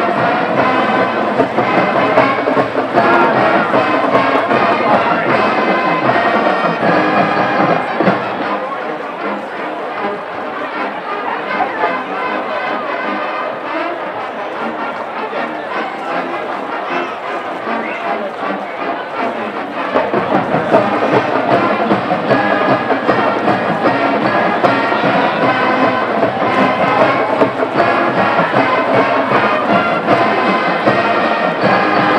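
Band music with brass, playing over stadium crowd noise. The music thins and drops a little in level from about 8 to 20 seconds in, then comes back fuller.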